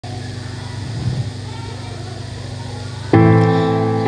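Instrumental backing track for a ballad starting. A low hum, then a sustained chord struck about three seconds in that rings on.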